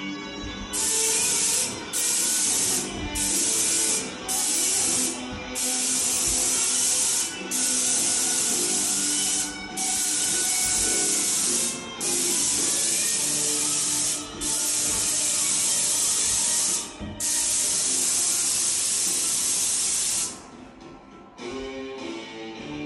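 Paint spray gun hissing in repeated bursts of one to two seconds or so, about ten sprays with short breaks between them as the trigger is released and pulled again; the spraying stops near the end.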